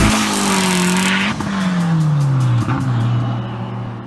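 A Mazda Miata's engine note falling steadily in pitch as the car comes off the throttle, after about a second of tire noise from a drift. Music with a beat plays faintly underneath, and everything fades out near the end.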